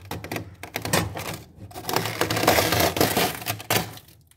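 Fingers scraping dry, flaky freezer frost off the inside of a freezer: a dense crackling scratch, in two long strokes with a short break about a second and a half in.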